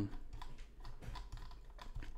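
Computer keyboard keys tapped in a quick, irregular run of soft clicks.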